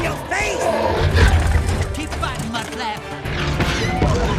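Action-film soundtrack: orchestral score over a heavy low rumble, with a giant robot's roars and many short gliding, warbling mechanical cries.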